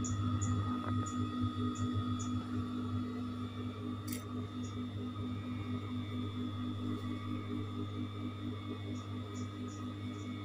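Industrial sewing machine's electric motor running with a steady low hum and a faint regular pulse.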